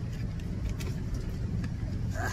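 Steady low background rumble with a few faint clicks, the loudest near the middle.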